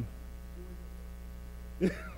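Steady electrical mains hum, a low buzz with a stack of overtones, running through a pause in the talk. A short burst of a voice comes in near the end.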